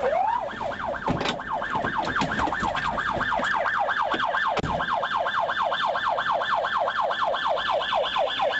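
Police car siren in fast yelp mode, its pitch sweeping up and down about four to five times a second, starting from a single slower rise. Two brief thumps come through, about a second in and again about four and a half seconds in.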